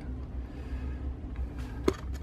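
Low, steady background hum with a single sharp click near the end.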